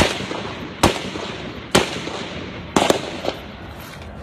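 A series of gunshots, five sharp reports about a second apart with the last two closer together, each followed by a short echo.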